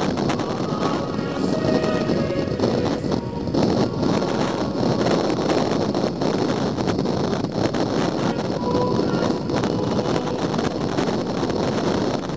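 Wind blowing on the camera microphone: a steady, loud rushing rumble with no break.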